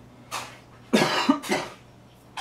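A man coughing: a quick run of about three coughs about a second in.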